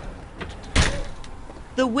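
A door being shut: a faint click, then one solid knock about a second in as it closes.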